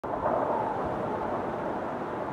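A steady rushing noise, like wind, that starts suddenly at the very beginning.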